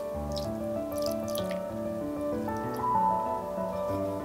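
Background music, with cooking wine poured and dripping onto a raw whole chicken in a glass bowl: a few short splashes in the first second and a half.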